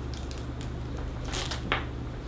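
Drinking from a large plastic water jug, its thin plastic crackling a couple of times about one and a half seconds in, over a steady low fan hum.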